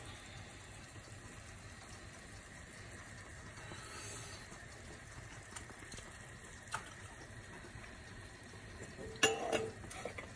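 Mashed potato sizzling faintly and steadily in a hot nonstick frying pan. There is a single tick about two-thirds of the way through and a short clatter of knocks near the end.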